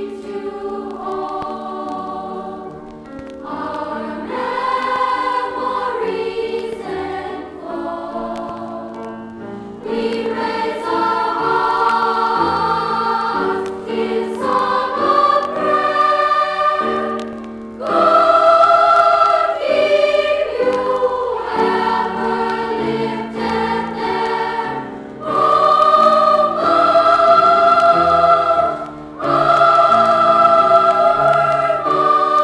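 A school glee club choir singing held chords in several voice parts, played from a vintage vinyl LP. The phrases grow louder about a third of the way through and again just past halfway.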